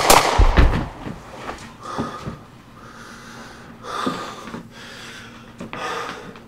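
A handgun shot at the very start, followed about half a second in by a deep thump, with the sound dying away over the first second. Then a man who has been shot breathes hard in several separate heaving breaths.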